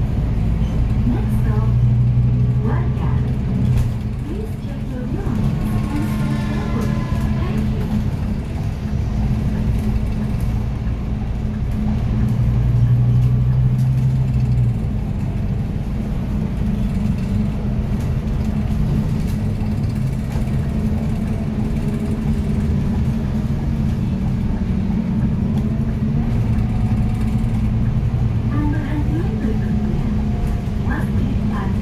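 Inside a moving city bus: a steady low drone from the drive and the road, with the hum growing louder for a few seconds twice, about two seconds in and again around twelve seconds in. Faint voices of people on board can be heard now and then.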